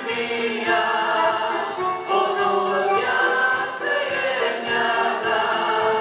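A church praise group of men and women singing a Romanian Easter worship song together into microphones, in sustained, continuous phrases.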